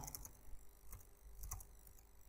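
Faint computer keyboard typing: a few soft, separate keystroke clicks as a word is typed.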